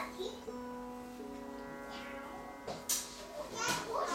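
Sitar playing over a sustained drone, with notes bent up and down in pitch near the start and again near the end. Two sharp, bright strikes cut in shortly before the end.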